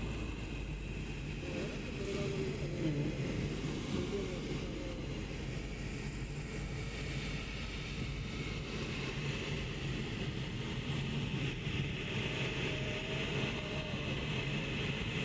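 Steady interior noise of a car driving in the rain: a low engine hum with tyre and road noise underneath.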